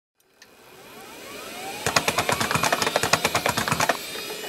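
Sound effects for an animated logo intro: a rising whoosh with upward-gliding tones, then from about two seconds in a rapid, even run of sharp mechanical clicks, about ten a second.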